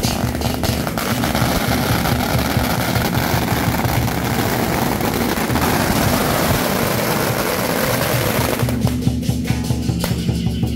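A long string of red firecrackers going off in a rapid, continuous crackle of bangs that stops a little before the end, with music playing underneath and coming through once it stops.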